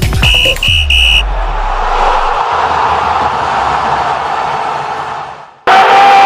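Channel intro jingle: three short high beeps, then a long airy whoosh over a low rumble that fades out. About five and a half seconds in it cuts abruptly to loud crowd noise in an indoor arena, with long held tones over it.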